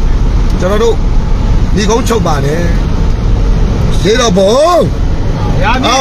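Low, steady rumble of a vehicle's engine and road noise heard inside the cabin, with a man's voice in short spoken phrases over it.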